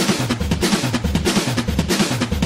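Song's drum break: a rapid run of snare and drum hits, with the bass and the rest of the band largely dropped out.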